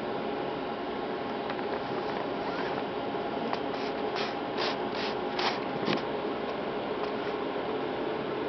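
Steady hum of running bench equipment, with a quick run of about six short rustling clicks about halfway through.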